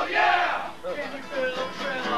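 A group of voices shouting together, loudest at the start and trailing off within about a second, as the guitar music drops away.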